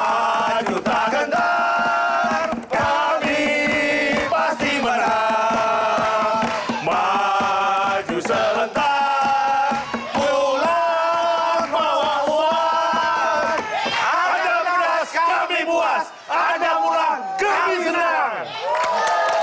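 A group of men shouting a team chant in unison, loud, in long drawn-out held notes with short breaks between them.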